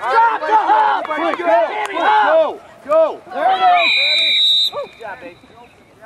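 Voices shouting on a lacrosse sideline, then a referee's whistle gives one blast of about a second, a little past halfway through.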